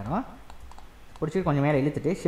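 A man speaking, with a quieter pause in the middle of the talk and computer keyboard clicks.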